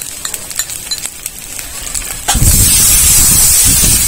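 Onion-and-spice masala frying quietly in oil in an aluminium wok, with a few light spatula clicks. A little over two seconds in, water hits the hot masala and it sizzles loudly with a steady hiss.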